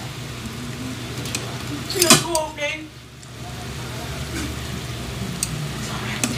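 Malagkit ube rolls sizzling steadily in shallow cooking oil in a frying pan as they are turned with tongs. A brief voice is heard about two seconds in.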